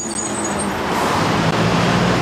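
Street traffic noise: the steady rush of cars going by, a little fuller in the middle.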